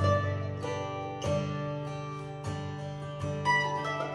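Acoustic guitar and mandolin playing together without singing: guitar strums with ringing bass notes about once a second, and the mandolin picks higher notes over them.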